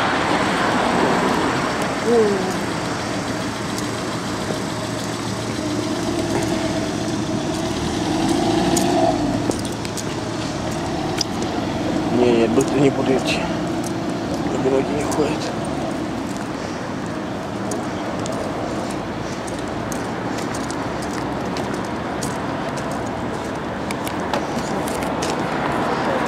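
Road traffic on a city street, cars passing in a steady wash of noise, with indistinct voices of people talking.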